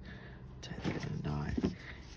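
Quiet rustling of jute twine and a ribbon bow being handled, with a brief faint murmur of a voice about a second in.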